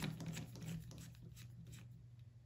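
Faint clicking and scratching of a small precision screwdriver turning a machine screw on a plastic gear-motor mount, the clicks thinning out toward the end.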